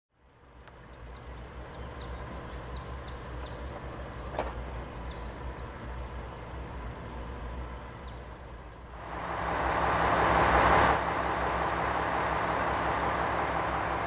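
Outdoor street ambience: a steady low engine hum under a small bird chirping in short, falling notes for the first eight seconds. From about nine seconds a rushing vehicle noise swells up, then drops off abruptly near eleven seconds.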